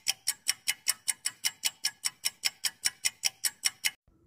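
Countdown-timer ticking sound effect: clock-like ticks at about five a second, steady throughout and stopping just before the answer is read.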